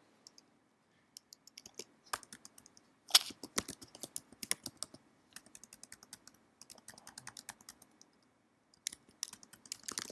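Typing on a computer keyboard: rapid, uneven runs of keystroke clicks starting about a second in, with a short pause near the end before the typing resumes.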